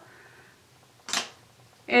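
A single brief, sharp click-like noise about a second in, against quiet room tone.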